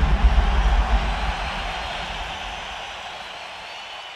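Tail of a radio show's transition sting: a deep rumble and a noisy wash, slowly fading out after the theme music ends.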